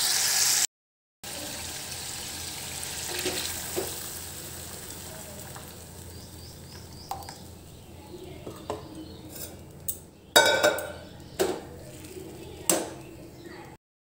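Masala sizzling in a steel kadai, then, after a brief silent cut, a quieter simmer as ground mustard paste is stirred in with a metal ladle: scattered ladle clicks, and a few louder clanks and scrapes against the pan near the end.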